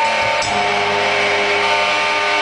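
Live rock band playing an instrumental passage: electric guitar chords ringing over bass, with the chord changing right at the start.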